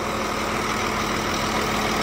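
Scania K410iB bus's 13-litre inline-six diesel idling steadily, a constant low hum under the engine noise, while its air-conditioning system is charged with freon.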